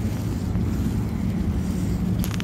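Wind buffeting a phone microphone outdoors, a steady low rumble.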